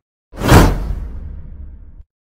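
Whoosh transition sound effect: it comes in about a third of a second in, swells to a loud peak within a quarter second, then fades slowly with a low rumble beneath it, cut off sharply at the end.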